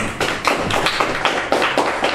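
A small group clapping, the claps irregular and overlapping, at the close of a statement.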